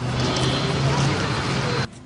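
Outdoor noise of a vehicle's engine running with people's voices around it, a steady low hum under a noisy wash, cutting off suddenly near the end.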